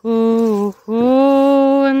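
Song on the soundtrack: a voice holds one long note, then, after a short gap, a second, slightly higher long note.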